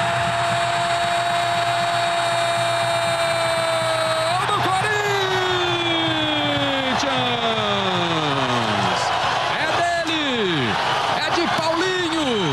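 Brazilian TV commentator's drawn-out goal cry, one long held note for about four seconds that then slides down in pitch, over a stadium crowd cheering the goal.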